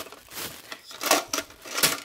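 A vintage Hot Wheels drag-race set's blue plastic two-lane stage tower being worked by hand, giving a few sharp plastic clicks and clacks. The loudest come about a second in and near the end, over light rustling of paper.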